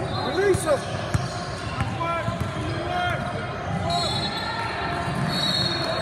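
Basketball game on a hardwood gym floor: sneakers squeak in short chirps again and again, and a ball bounces a few times, with voices echoing in the hall.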